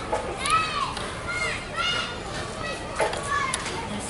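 Young children's high-pitched voices calling out, a few short rising-and-falling cries over a background of outdoor noise.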